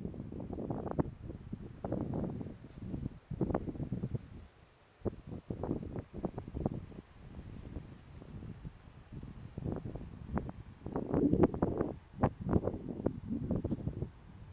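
Wind buffeting the microphone in irregular gusts, with a brief lull a little over four seconds in and the strongest gusts a few seconds before the end.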